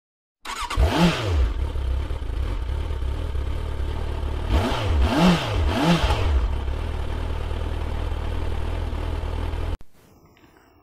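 Motorcycle engine idling, blipped three times: one rev about a second in and two close together around five to six seconds, each rising and falling in pitch. The sound stops abruptly just before the end.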